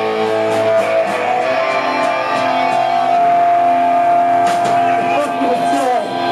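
Live rock band playing loud through a PA, with held electric guitar chords and several cymbal hits over the drums.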